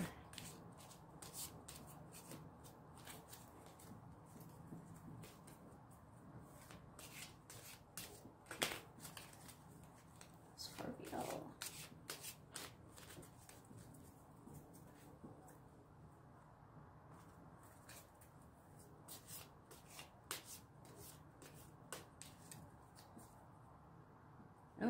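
A tarot deck being shuffled by hand, packets of cards dropped from one hand into the other: a faint run of irregular card flicks and taps.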